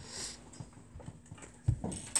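Faint handling noises on a desk: a brief rustle at the start and a soft thump near the end.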